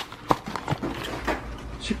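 A few light knocks and clicks of kitchen utensils and containers being handled during cooking, over a low hum.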